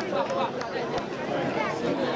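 Chatter of a group of children, with many voices talking over one another.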